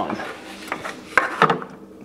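Plastic refrigerator front skirt being pushed and snapped into place under the fridge: a few sharp plastic clicks and knocks, the loudest a little over a second in, with light rubbing.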